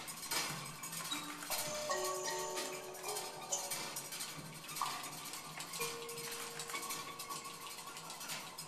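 A small jazz ensemble playing a sparse, quiet improvised passage: scattered light clicks and taps with several held notes, a cluster of them about two seconds in and one long note through the last two seconds.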